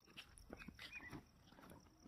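Near silence: faint outdoor background with a few soft, scattered sounds in the first second.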